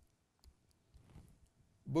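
A few faint, sharp clicks in a quiet pause, then a man's voice begins near the end.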